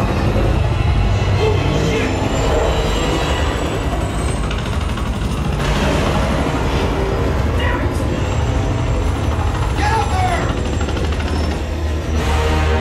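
Movie soundtrack played through an Ascendo 7.2.4 Atmos home theater system and heard in the room: a dense, loud mix of deep subwoofer rumble, music and snatches of voices.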